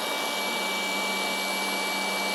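Two cordless rotary polishers, a Hercules 20V brushless and a Flex, running steadily together: an even motor whir with several fixed whining tones, the machines warm from an extended run test.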